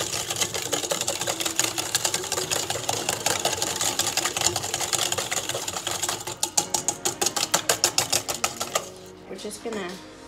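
Wire whisk beating a thick mayonnaise marinade in a stainless steel bowl: rapid clicking and scraping of the wires on the metal, turning into a fast, even beat of strokes about six seconds in, then stopping about a second before the end.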